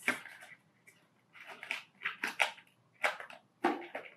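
Packaging being handled in a cardboard box: paper and wrapping rustling and crinkling in about five short bursts with quiet gaps between them.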